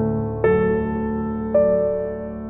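Slow, soft instrumental piano music: a sustained low chord, with new notes struck about half a second in and again about a second and a half in, each ringing and slowly fading.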